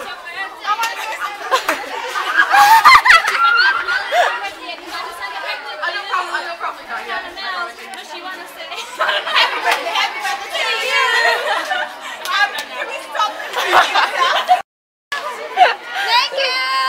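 Overlapping chatter of several girls' voices, with a brief dropout to silence near the end.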